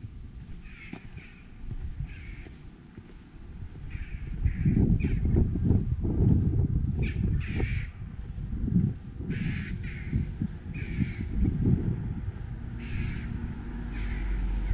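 Crows cawing repeatedly in short calls. A low, irregular rumble rises about four seconds in, is loudest in the middle and eases off near the end.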